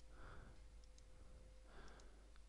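Near silence with a few faint computer mouse clicks and a soft breath, over a faint steady hum.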